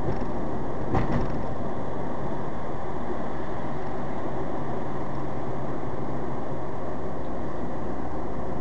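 Steady road and engine noise of a car cruising on a highway, heard from inside the cabin, with a brief thump about a second in.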